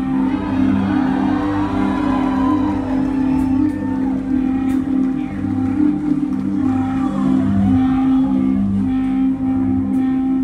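Rock band playing live: held, droning guitar and bass chords, with voices from the crowd over it.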